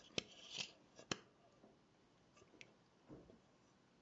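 Faint metallic clicks and a brief scrape from the valve gear of a 7¼-inch gauge model steam locomotive, moved by hand as the slide valve travels over its ports. Two sharp clicks come in the first second or so, then it is near silent apart from a faint tick or two.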